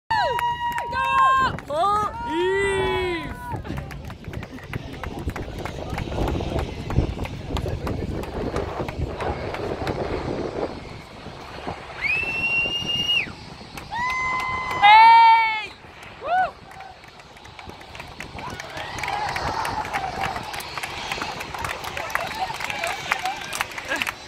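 Crowd of spectators shouting and cheering, with long, loud held yells. The loudest yell comes about fifteen seconds in, and a steady murmur of voices runs beneath.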